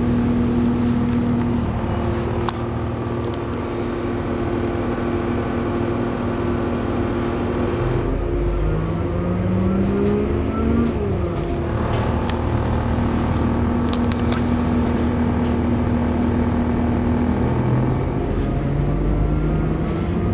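Class 197 diesel multiple unit's underfloor engine and transmission, heard from inside the carriage as the train pulls away from a station: a steady drone, then a whine that rises in pitch as it picks up speed around the middle, drops and climbs again, and settles into a steady run.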